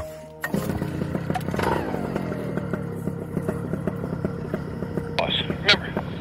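Paramotor engine starting about half a second in, then running steadily with its propeller turning as the revs settle.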